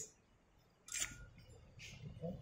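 Two sharp clicks about a second apart, the first with a brief ringing tone.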